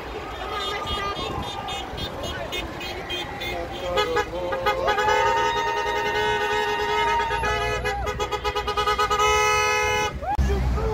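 A car horn sounding long and steady on two notes for about five seconds from halfway through, after shorter honks earlier. Voices from the roadside crowd are heard under it.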